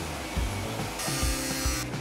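Background rock music with a steady beat. About a second in comes a short burst of hissing grinding, under a second long, as a power-tool wheel works a steel exhaust pipe.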